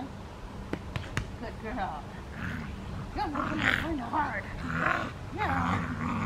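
Rottweiler puppy growling and vocalizing in rough play: a string of short rising-and-falling calls and rough, noisy growls, louder and more frequent in the second half.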